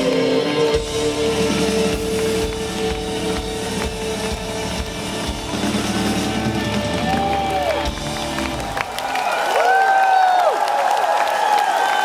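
Live rock band playing the final bars of a song, with held keyboard and guitar notes over drums. About nine seconds in the band stops and the arena crowd cheers and applauds, with several whistles.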